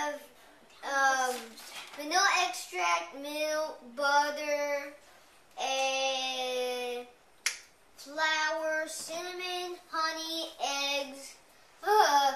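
A child's voice singing or chanting in short phrases without clear words, with one long held note about halfway through. A single sharp click comes shortly after the held note.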